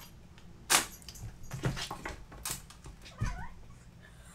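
A pet making several short, sharp sounds in quick succession, the loudest about a second in, while being kept from a toy it wants: it is worked up over the toy held out of its reach.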